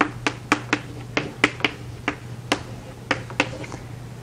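Chalk tapping and scraping on a chalkboard as an equation is written: irregular sharp taps, two or three a second.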